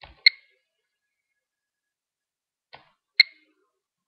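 Kiparis Geiger-counter dosimeter giving two short, sharp clicks about three seconds apart. Each click is one counted radiation pulse, and the sparse rate matches a low background dose rate.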